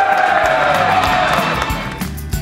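Background music with a crowd cheering and applauding, fading out towards the end.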